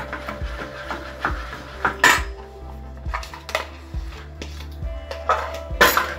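Metal kitchen utensils clinking and knocking against one another in a run of short strikes, with two louder clanks about two seconds in and near the end.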